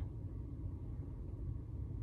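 Low, steady rumble of background noise inside a stationary car's cabin, with no distinct events.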